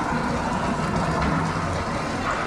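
Steady, noisy ambient din of a narrow street hemmed in by buildings, with a low hum underneath and no single sound standing out: the noise echoes off the surrounding walls.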